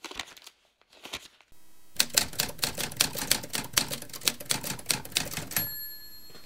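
Typewriter keys clacking in a fast run of strikes, after a few softer clicks. Near the end a single bell ding rings out.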